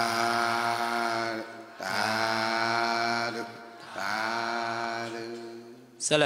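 Men's voices chanting three long, drawn-out calls on one steady pitch with short breaks between them, in the manner of the Buddhist 'sadhu, sadhu, sadhu' response; the third fades away near the end.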